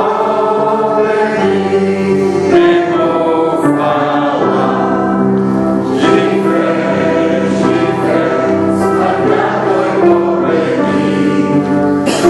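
Choir singing sacred music, with long held chords.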